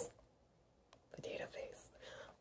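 A woman's soft, breathy laugh, starting about a second in after a moment of near silence.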